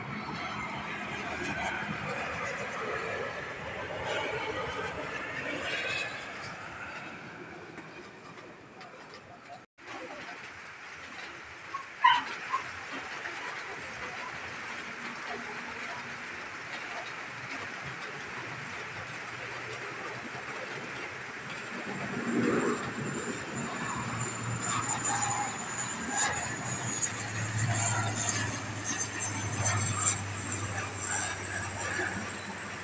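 Airliner engines on approach, their pitch sliding downward as the aircraft passes, then cut off abruptly. After a sharp knock, a high-wing twin-turboprop airliner approaches: a low propeller drone and a high steady whine build toward the end.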